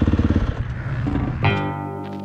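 Dirt bike engine idling with a rapid, even pulse that cuts off about a quarter of the way in. About a second later, guitar music starts.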